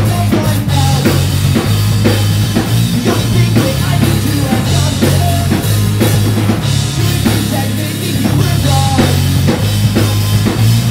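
Pop-punk band playing live: a drum kit keeps a fast, steady beat of kick and snare over a steady bass line and the rest of the band.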